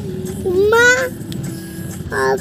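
A single high-pitched squeal rising in pitch, about half a second long, starting about half a second in, over a steady low rumble.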